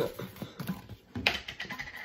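Plastic screw-top lid of a protein powder tub being twisted off: an irregular run of clicks and rasps as the threads turn, busiest just past the middle.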